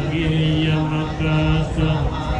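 Buddhist chanting in Pali: a voice intoning long, held notes in a steady recitation with short breaks between phrases.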